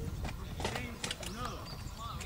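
Indistinct voices of several people talking in the background, with a few short clicks over a steady low rumble.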